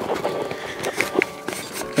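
Faint background guitar music, with a few soft handling clicks as the camera is moved.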